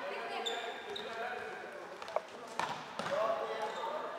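Live floorball play in an echoing sports hall: players' shouts and calls, with sharp clacks of sticks striking the plastic ball about two, two and a half and three seconds in. A brief high squeak comes about half a second in.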